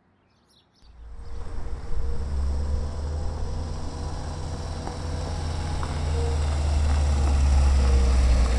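A vehicle engine sound effect: a steady low running hum that starts suddenly about a second in and grows gradually louder as the vehicle approaches.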